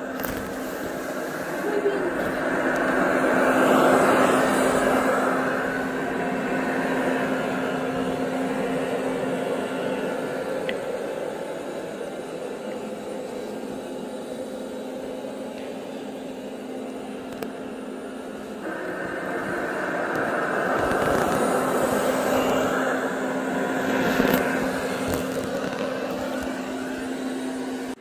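Ultenic D5s Pro robot vacuum running on thick carpet: a steady motor hum under a whirring brush and suction noise. The noise swells twice, a few seconds in and again in the second half, as the robot comes closer.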